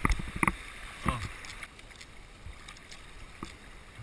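Kayak on moving river water: a few sharp knocks and splashes of the paddle in the first half second, then a steady wash of water.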